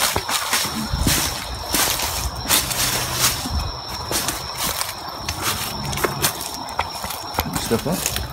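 Footsteps crunching and rustling through dry leaf litter and brush, a run of irregular crackles and snaps.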